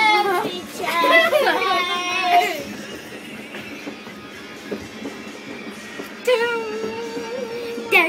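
Children singing and shouting over music, lively for the first two and a half seconds, quieter in the middle, then a child holds one long note near the end.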